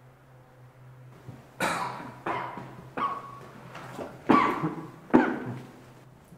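A person coughing close to the microphone, five coughs over about four seconds, the last two the loudest.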